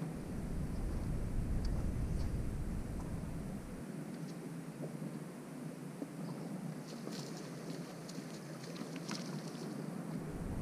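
Wind rumbling on the microphone for about the first four seconds, then cutting off sharply into a quieter steady open-air background, with a few faint ticks near the end.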